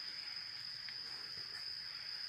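Insects, crickets by their sound, chirring in the forest as one steady, high-pitched, unbroken tone.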